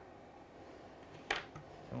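Quiet room with a single short, sharp click from steel grooming scissors about a second in.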